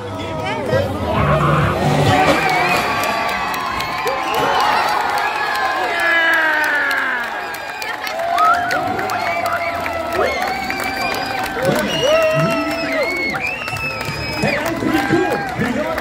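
Grandstand crowd cheering and shouting, many voices calling out at once with long held yells.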